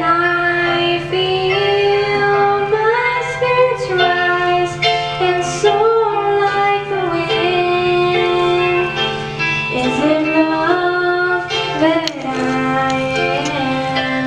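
A teenage girl singing a solo into a handheld microphone, amplified through a portable PA speaker, over recorded accompaniment music.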